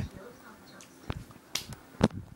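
A few sharp clicks close to the microphone: two about half a second apart a little over a second in, and a louder one at the very end.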